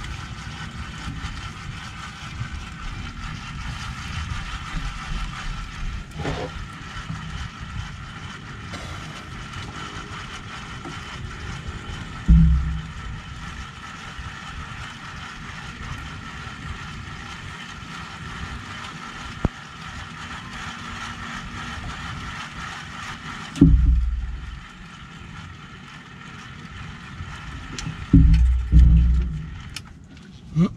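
A steady hum of a boat motor, with wind rumbling on the microphone. The hum stops about three-quarters of the way through, and loud low thumps come about halfway, at that point and near the end.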